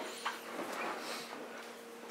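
A latex balloon being blown up by mouth: faint breaths into the balloon with a few faint, short squeaks.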